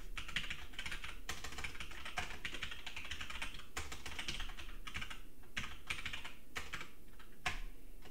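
Typing on a computer keyboard: a quick, steady run of keystrokes entering a username.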